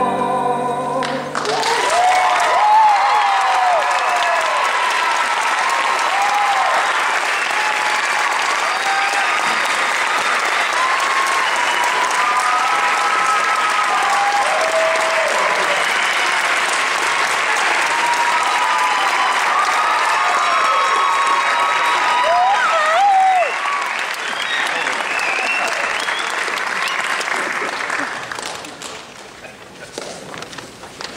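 The last note of a solo song with piano ends about a second and a half in, and an audience breaks into loud applause and cheering, with shouted whoops rising above the clapping. The applause holds steady, then dies away near the end.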